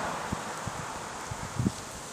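Steady outdoor hiss with wind on the microphone, broken by a few soft low bumps, the strongest one near the end.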